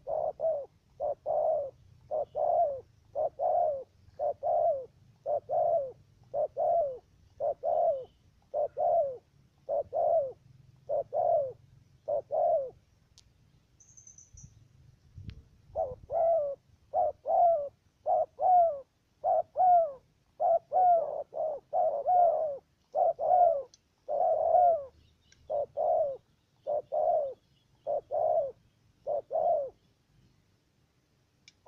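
Spotted dove cooing: a fast, even run of short coos, nearly two a second, broken by a pause of about three seconds a little before halfway.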